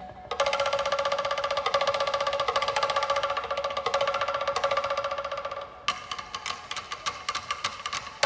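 Wooden slit drums struck with sticks in a fast, dense interlocking pattern with clear wooden pitches. About six seconds in it drops to sparser, quieter strikes.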